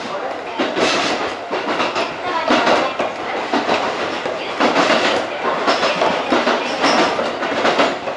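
Tobu 8000 series electric train running over the points and rail joints beyond a station, heard from inside the rear cab: a steady rumble of wheels on rail broken by an uneven run of loud clacks as the wheels cross the switches.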